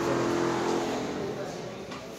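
A steady mechanical hum made of several tones, fading away over about two seconds, with voices in the background.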